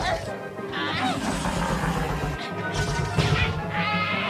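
Animated cartoon soundtrack: background music with an action crash sound effect and characters' yelling voices.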